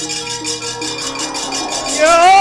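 Javanese gamelan accompaniment for wayang kulit: ringing metallophone notes held and changing over a quick patter of high, clattering metallic strikes.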